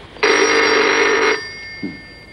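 Desk telephone ringing once: a single ring about a second long, its bell tones dying away afterwards.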